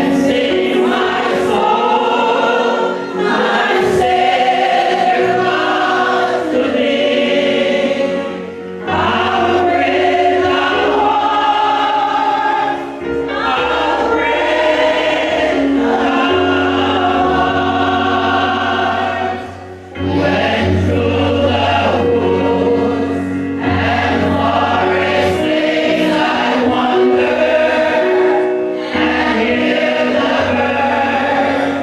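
A church congregation of men and women singing a hymn together, phrase by phrase with brief dips between lines, over held low notes.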